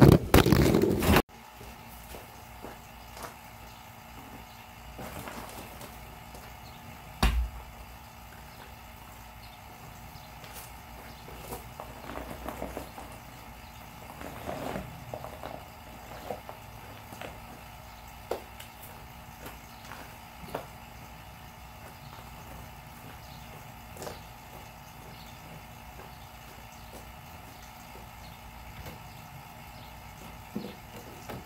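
Quiet outdoor background with scattered light knocks and handling noises as someone works around a vehicle chassis, the loudest a single thump about seven seconds in. A loud sound at the very start cuts off abruptly about a second in.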